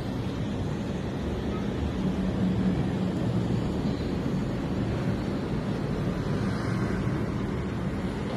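Steady low rumble of distant city traffic, an even hum with no distinct events.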